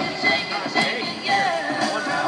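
Amplified live band music played through an outdoor stage PA.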